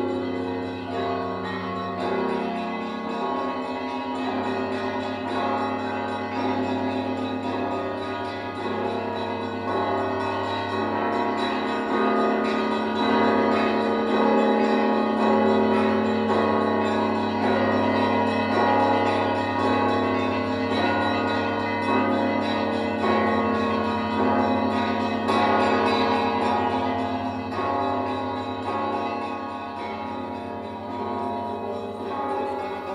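Church bells of a Russian Orthodox church ringing: several bells of different pitches struck again and again, the ringing growing louder around the middle.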